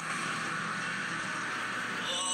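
Steady rushing noise of road traffic, an even hiss with no distinct events.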